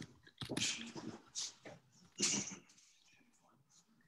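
A person's voice, faint, in three short breathy bursts over the first two and a half seconds, then near silence.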